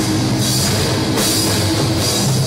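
Metalcore band playing live at full volume: distorted guitars and bass over a drum kit, with a cymbal crash about half a second in.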